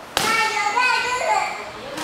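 A sharp slap of a bare foot striking a hand-held kick paddle, just after the start, followed by a high voice calling out for about a second.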